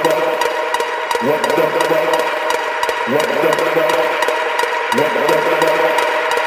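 Electronic dance track playing in a techno/house DJ mix: a steady beat of crisp percussion hits about four times a second, with a short phrase rising in pitch repeating about every two seconds.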